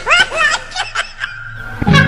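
High-pitched laughter in a quick run of short 'hi-hi-hi' bursts that fades out about a second in. Upbeat music with plucked strings comes in near the end.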